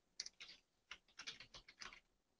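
Faint, irregular clicking of a computer keyboard being typed on, about a dozen keystrokes over two seconds.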